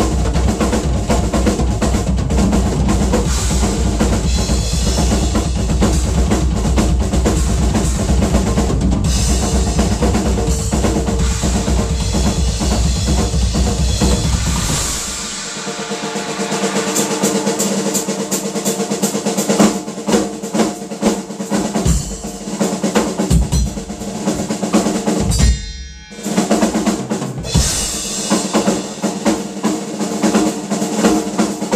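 Large acoustic Pearl drum kit played hard with two bass drums. For about the first fifteen seconds, rapid continuous bass drum strokes run under cymbals and snare. Then the bass drops away into separate tom, snare and cymbal strokes, with a split-second break near the end before the playing resumes.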